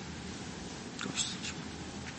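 Quiet, soft speech, with a few faint hissy consonant sounds about a second in, over the steady background hiss of a courtroom audio recording.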